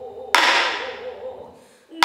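A pansori singer's held note with a wide, even vibrato, trailing away, crossed about a third of a second in by one sharp stroke on the buk barrel drum that dies away over about a second. A new loud sung phrase starts right at the end.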